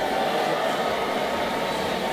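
Steady background noise of a large convention hall: an even, continuous hiss with a faint steady tone in it.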